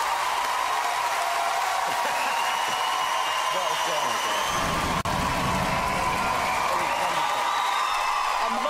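Large theatre audience applauding and cheering at the end of a performance, a steady wash of clapping with faint whistles and whoops over it.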